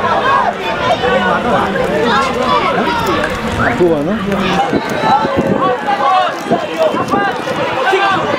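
Several voices talking and calling out over one another, loud and continuous.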